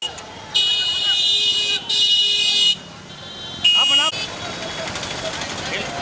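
High-pitched motorcycle horns honking: two long blasts in the first three seconds, then a shorter one about four seconds in, over voices and street traffic noise.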